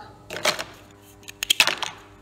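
Plastic building blocks clattering and clicking against each other as a hand rummages through a bin of them, in two bursts: about half a second in and again around a second and a half.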